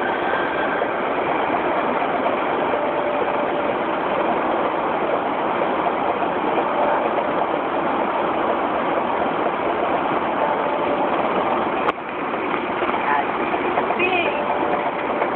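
Steady wind, tyre and engine noise inside the cabin of a Porsche Cayenne Turbo with its twin-turbo V8 running at high speed. A single sharp click about twelve seconds in.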